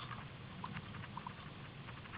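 Steady rushing noise of skis moving through deep fresh powder snow, with a few small squeaks and clicks.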